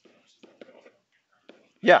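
Speech only: faint, low voices, then a man's loud "Yeah" near the end.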